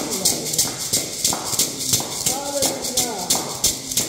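A beaded hand rattle shaken in a steady rhythm together with hand clapping, accompanying voices singing in worship.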